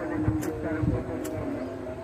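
A pocket lighter being flicked twice, sharp clicks about half a second and a second and a quarter in, as someone tries to light a cigarette in the wind. Wind buffets the microphone, and a low steady drone runs underneath.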